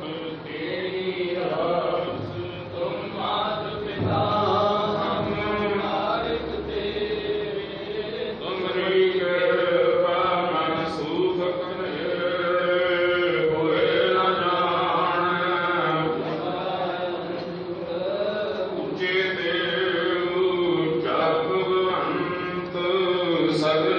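Sikh devotional chanting (simran): voices chant in continuous melodic phrases.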